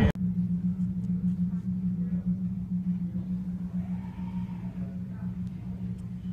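Steady low electrical or mechanical room hum, slowly getting a little quieter, with faint light ticks.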